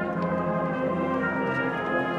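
A school concert band playing, brass prominent, in held chords that change a few times.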